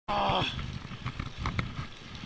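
A man's short pained groan at the very start, then heavy breathing and rumbling close to the microphone: he has just fallen and injured his ankle, which he thinks is broken.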